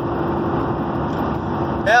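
Steady road and engine noise heard inside the cab of a moving vehicle, an even rumble with a faint steady hum running under it.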